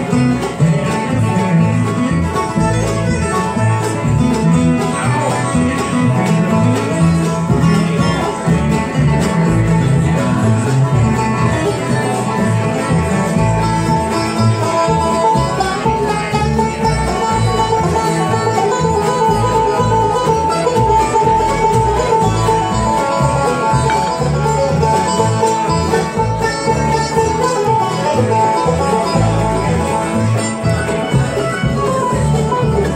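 A live bluegrass band playing an instrumental passage with no singing. Banjo, acoustic guitars, fiddle, mandolin and upright bass are heard, with the banjo taking a turn at the microphone partway through.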